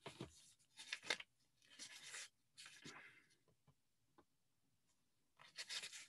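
Near silence broken by several faint, short rustling noises, each under a second long.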